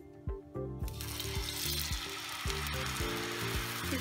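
Gram-flour batter poured onto a hot oiled griddle (tawa) and sizzling; the sizzle comes on suddenly about a second in as the batter hits the oil and holds steady.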